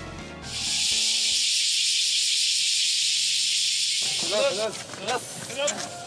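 A loud, steady high-pitched hiss lasts about three and a half seconds and cuts off suddenly. It is followed by a bird chirping in repeated short calls.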